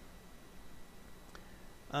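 Quiet room tone with a faint steady low hum and a single faint click partway through, in a pause between a man's words.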